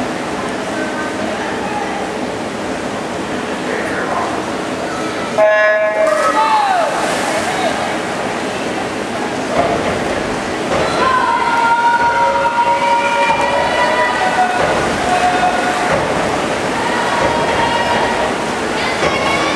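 Swimming-meet starting system giving its short electronic start beep about five seconds in, setting off a backstroke heat. Spectators cheer and shout over steady crowd noise for the rest of the stretch.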